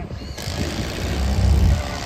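Mobile crane's diesel engine running under load, its low rumble swelling in the second half. A loud hiss starts suddenly about half a second in and runs to the end.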